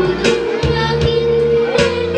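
A group of children singing a Sinhala Buddhist devotional song into microphones, holding one long note over instrumental accompaniment with a few drum hits.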